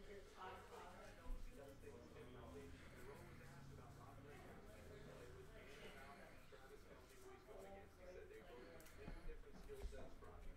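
Near silence: faint rustling and flicking of a stack of baseball cards being sorted by hand, with a soft tap about a second in.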